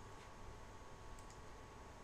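A few faint computer mouse clicks, two of them close together about a second in, over a steady faint hum and hiss.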